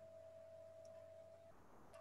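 Near silence: faint room tone, with a faint steady single-pitched tone that cuts off about a second and a half in.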